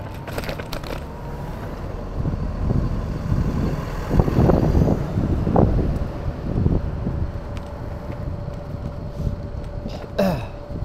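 Wind rumbling on the microphone with street noise during an e-scooter ride, swelling about four seconds in and easing after six, over a faint steady tone.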